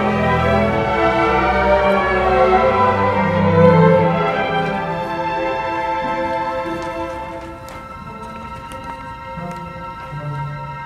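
Symphony orchestra playing: a full texture with strong low parts swells to a peak about four seconds in, then thins out and grows quieter, leaving softer held higher tones.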